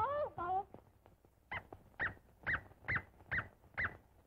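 A cartoon dog yipping six times in quick succession, about two a second, each yip rising and falling in pitch. It is preceded by a brief cartoon voice sliding in pitch at the start.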